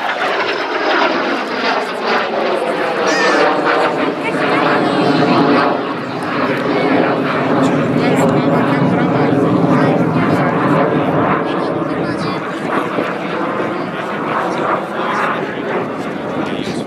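Aero L-39 Albatros jet trainer's Ivchenko AI-25TL turbofan heard from the ground during an aerobatic display, a loud continuous jet noise whose tone sweeps slowly as the aircraft moves across the sky. It is loudest in the middle and eases off toward the end.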